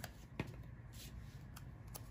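Faint handling sounds of paper: a few soft clicks and taps over a low room hum, one right at the start, one just under half a second in, and one near the end.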